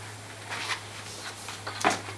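Handling sounds from the telescope: a brief rustle about half a second in, then a single sharp knock near the end, over a steady low hum.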